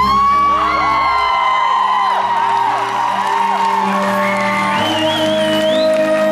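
A live rock band's song ending: the low end of the band stops about a second in while a held tone keeps ringing, and a concert crowd whoops and screams.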